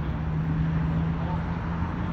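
A steady low hum that holds one pitch, over a haze of outdoor noise, with faint distant speech.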